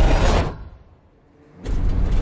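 Film-trailer battle sound effects: the loud rushing tail of an explosion fades away about half a second in. A brief hush follows, then a loud low rumble swells back in near the end.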